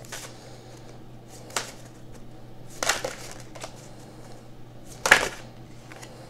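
Affirmation cards being shuffled and handled by hand: a few separate short rustles and snaps of card against card.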